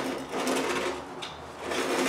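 Clockwork motor of a Hornby 490 O gauge tinplate locomotive running, its spring-driven gears turning the wheels.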